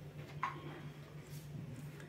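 Quiet hand handling of fabric and a tape measure on a cutting table, with one short click about half a second in, over a steady low hum.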